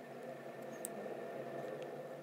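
Quiet, steady background hum made of several held tones, with two faint small ticks about a second apart.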